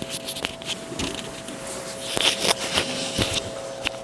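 Handling noise from a clip-on lavalier microphone being fiddled with and refitted after it fell to the floor: scattered clicks and rustling, with a faint steady hum underneath.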